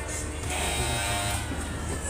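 Funfair ride music over loudspeakers with a steady deep bass, and a buzzing tone held for about a second near the middle.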